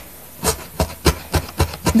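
Felting needle stabbing repeatedly through a wool heart into its foam felting pad: a run of about seven short knocks, three to four a second, coming a little faster near the end. The stabbing is firming up the second side of the felted shape.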